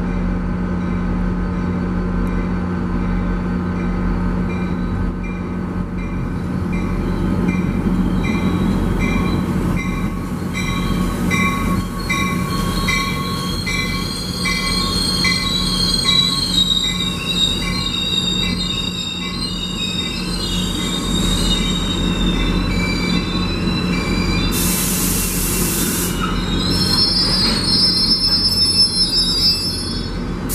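A slow passenger train pulls past a platform, its locomotive engine running with a steady low hum. At first the wheels click regularly, about one and a half times a second. Then high, wavering wheel squeals build up, with a short burst of loud hiss near the end.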